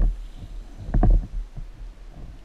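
Underwater rumbling and gurgling from a diver breathing off a hookah air supply: bursts of exhaled bubbles, one starting sharply at the start and a louder one about a second in, over a steady low rumble.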